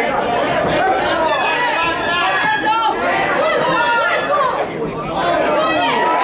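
Spectators' voices: many people talking and calling out over one another in a large hall, a steady crowd chatter.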